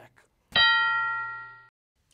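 A single bell-like chime struck once about half a second in, ringing with several steady overtones and fading away over about a second: a transition ding between the quiz questions.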